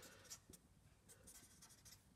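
Faint strokes of a felt-tip marker writing on paper.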